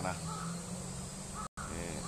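Crows cawing in the background, short calls repeating over a low steady hum. The audio drops out for an instant about one and a half seconds in.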